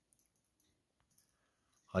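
Near silence with a faint click of knitting needles about a second in; a woman's voice begins at the very end.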